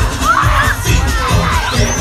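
Crowd of parade spectators shouting and cheering, with high-pitched calls and a rising whoop near the end, over parade music with a pulsing bass beat.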